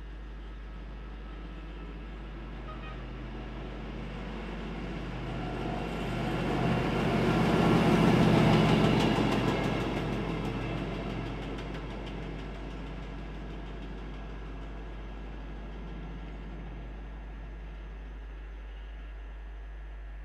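Yellow self-propelled track maintenance machine passing on the rails. Its diesel engine and wheels grow louder to a peak about eight seconds in, with a quick run of clicks as it goes by, then fade away.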